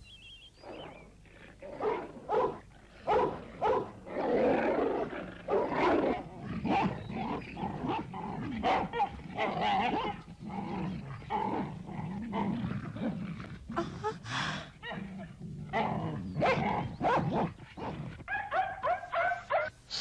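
Dog fight sound effects on an animated film's soundtrack: repeated growls and barks in irregular bursts from about a second in until the end.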